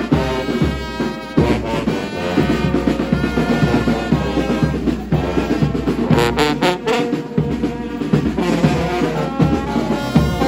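Marching brass band playing a tune in full, with low brass horns such as euphoniums and tubas, over a steady drum beat.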